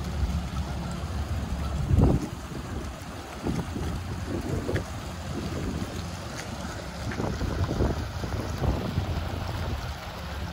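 Wind buffeting the microphone: a steady low rumble with irregular gusts, the strongest about two seconds in.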